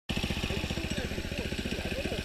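Small single-cylinder four-stroke go-kart engine (5–6 hp) idling fast with a quick, even run of firing pulses; the idle is set high.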